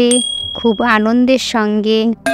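A bright, high ding rings out at the start and dies away within about a second, over a voice with background music.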